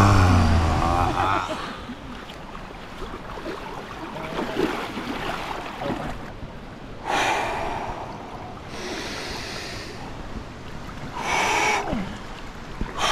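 A long sigh of breath let out at the end of a deep-breathing exercise, falling in pitch and fading over the first second or so. Then, over a steady rush of water, a few short loud bursts of forced breath and gasps from people wading into cold river water.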